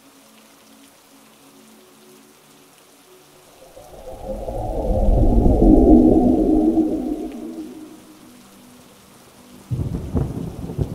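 A long rolling thunder rumble swells in about four seconds in, peaks in the middle and dies away by about eight seconds. Before it come faint low, steady droning tones.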